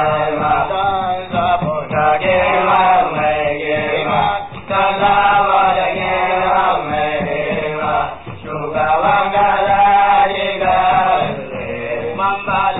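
Hausa praise song: a man's voice chanting long melodic phrases over accompaniment, with short breaks between phrases.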